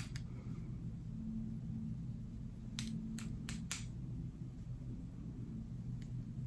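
Faint steady low room hum, with four quick sharp clicks about halfway through.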